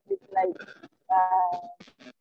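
A man's voice in speech-like fragments, with a drawn-out, slightly falling hesitation vowel about a second in.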